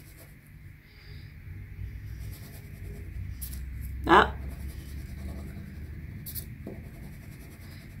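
A wax crayon rubbing back and forth on paper as a small cutout is colored in, faint and steady.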